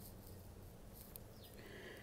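Near silence: faint room tone with a low hum, and a faint short high chirp falling in pitch near the end.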